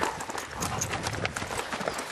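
Hoofbeats of a Percheron–Appaloosa cross horse moving under saddle on arena dirt: a run of uneven thuds.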